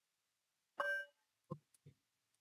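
A bell rung once: a brief ringing with several clear tones that dies away within about half a second. It is followed by two short, soft sounds.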